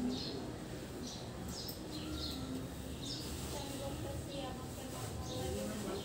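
Birds chirping: short, high chirps that fall in pitch, coming about once a second, over faint voice-like mumbling.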